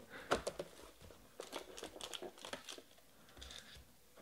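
Cardboard trading-card hobby box being torn open by hand at its perforated flap, a run of short crackles and rips with brief pauses between them.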